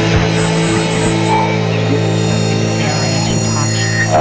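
Rock band playing an instrumental passage on electric guitars, bass guitar and drums, with a low chord held and ringing.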